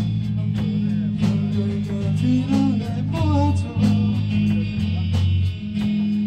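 Live rock band playing: electric guitar and electric bass over a drum kit, a short instrumental stretch between sung lines, with steady drum and cymbal hits.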